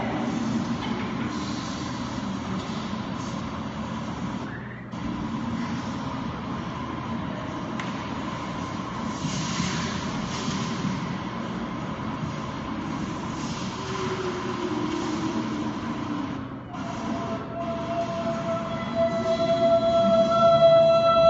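Dense electronic soundscape over loudspeakers: a steady rumble and hiss with a held tone and, late on, a slow falling glide. It drops away briefly twice, about five seconds in and again near the end.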